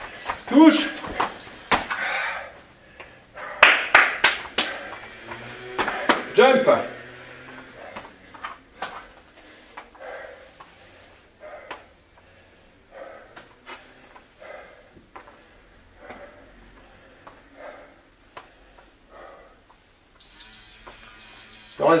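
A man breathing hard after a high-intensity cardio interval: loud voiced gasps and exhalations with a few footfalls on the floor in the first several seconds, then quieter, regular panting about once a second as he recovers.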